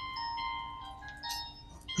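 Mobile phone ringtone playing a simple electronic jingle: a run of clean, stepping notes.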